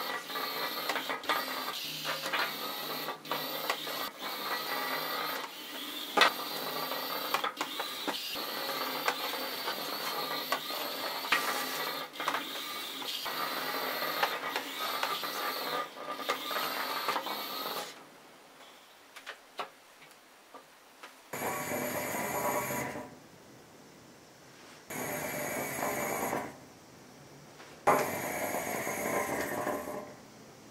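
Cubelets robot drive block's small geared electric motors whining steadily with light clicking as the robot rolls across a tabletop. After about eighteen seconds they fall silent, then run again in three short bursts of a second or two each.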